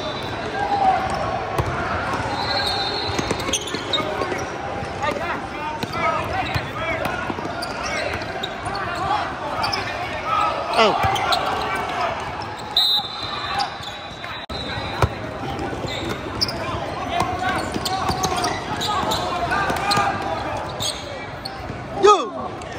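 Live basketball game in a large gym: a basketball bouncing on the hardwood court, with many short thuds, amid the mingled voices of players and spectators echoing in the hall.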